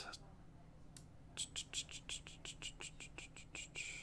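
Computer keyboard being typed on: one faint keystroke about a second in, then a quick run of about a dozen keystrokes, roughly five a second.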